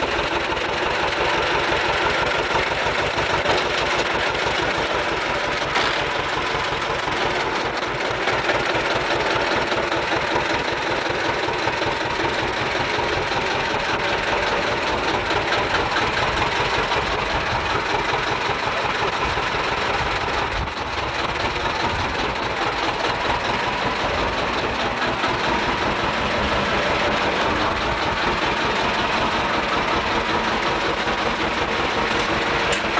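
Zetor tractor fitted with a Vladimirets two-cylinder air-cooled diesel engine, running steadily with an even low beat of firing strokes.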